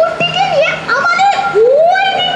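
Only speech: a girl's high child's voice speaking lines of dialogue.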